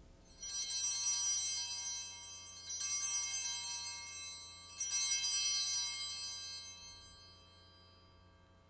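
Altar bells (Sanctus bells) rung three times, about two seconds apart, each peal ringing on and fading away. They mark the elevation of the consecrated host at Mass.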